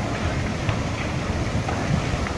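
Old wooden temple hall burning fiercely: a steady low rumble of the blaze with a few sharp crackles of burning timber.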